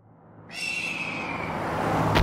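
A hawk's screech sound effect: one long cry that begins suddenly about half a second in and slowly falls in pitch, over a low, steady engine rumble that fades in from silence and keeps growing louder.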